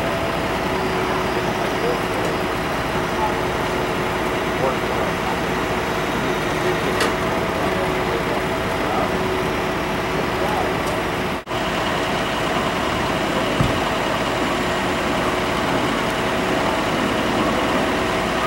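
A vehicle engine idling steadily, with a constant hum. There is a brief dropout about eleven and a half seconds in.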